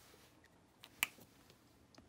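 Quiet room tone with one sharp click about a second in, and a fainter tick just before it.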